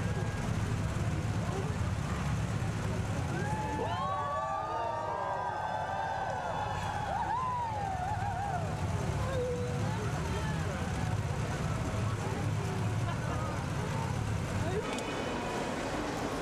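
Steady low rumble of a car idling, with several voices calling out together for a few seconds starting about four seconds in. The rumble drops away near the end.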